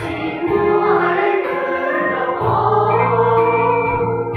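A mixed choir of young voices singing a hymn of praise in Hmong, in long held notes.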